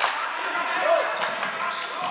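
Floorball in play on a sports-hall court: sharp clicks of sticks striking the plastic ball, and a short shoe squeak on the court floor, with players' voices behind.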